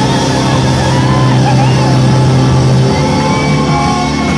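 Live band playing loudly, with a singer's voice over a low note that the band holds until near the end.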